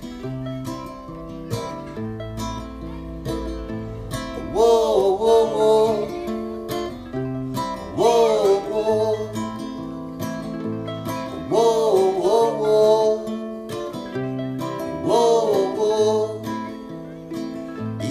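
Acoustic guitar strummed in a steady rhythm with alternating bass notes, under a wordless vocal phrase that rises and falls four times, about every three and a half seconds.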